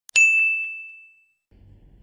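Two quick mouse-click sound effects, then a bright notification-bell ding that rings out and fades over about a second.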